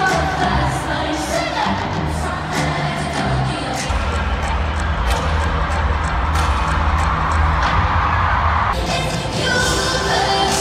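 Live pop music with singing over a stadium sound system, recorded from the stands, with crowd cheering mixed in. A heavy bass comes in about four seconds in, and the sound changes abruptly near the end.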